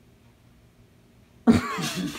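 After a quiet pause with a faint room hum, a man bursts into a sudden, loud coughing laugh about one and a half seconds in.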